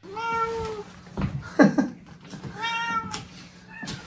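A hungry house cat meowing: two long, drawn-out meows about two seconds apart, with a shorter, louder sound between them.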